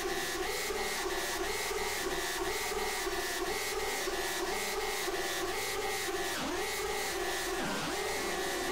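Experimental electronic synthesizer music: a mechanical-sounding pulse repeating about twice a second over steady buzzing tones and fine rapid clicks, with two swooping pitch dips near the end.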